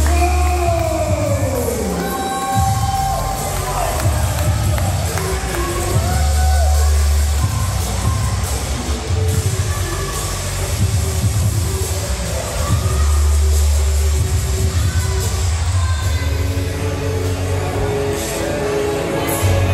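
Wrestling entrance music playing loudly over a PA with heavy bass, while the crowd cheers and shouts.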